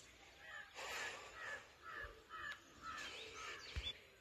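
Faint bird calls: a run of short, repeated notes, coming two or three a second.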